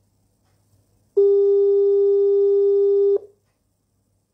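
Telephone ringing tone: one steady electronic tone lasting about two seconds, starting about a second in and cutting off sharply.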